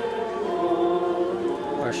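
Many voices singing a hymn together in long, held notes. Just before the end a man's speaking voice comes in.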